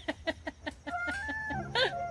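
An animal making a quick run of short clucking calls, about seven a second, then a longer call that steps in pitch, and a rising-and-falling call near the end.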